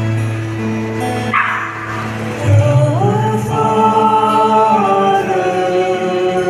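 Church music team performing a hymn at Mass: steady held instrumental notes, then singing comes in about two and a half seconds in, sliding up into long sustained notes. A short rushing noise sounds a little over a second in.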